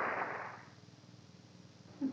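A commercial's background sound fading away within the first half second or so, then near silence with faint tape hiss and a low hum: the gap between two broadcast segments on an old TV recording.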